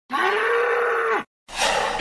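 A bull's bellow: one long call held for about a second. It stops, and after a brief gap a rushing noise rises into the start of the announcer's voice.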